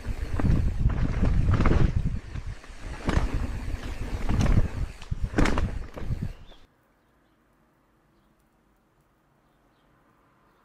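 AI-generated Veo 3 soundtrack of a mountain bike riding a forest dirt trail: a rushing noise full of knocks and rattles. It stops abruptly about two-thirds of the way in.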